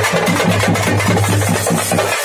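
A group of parai frame drums beaten with sticks, playing together in a fast, steady rhythm of about seven strokes a second.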